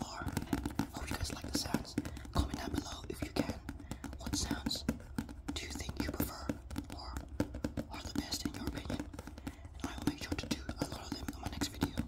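Close-microphone ASMR sounds: fast, irregular finger clicks and taps mixed with soft, breathy whispering sounds that come and go every second or two.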